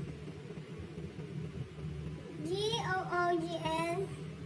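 A high female voice singing a short rising phrase, then holding a note, over a steady low background hum, starting a little past halfway.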